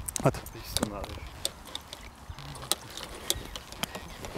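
Golf clubs in a carry bag clinking together as the bag is carried, a string of light, irregular metallic clicks, with a couple of short spoken words near the start.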